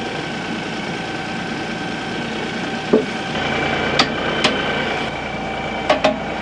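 LS compact tractor's diesel engine idling steadily, with four sharp metallic clacks in the second half from the loader's skid-steer quick-attach latches being worked.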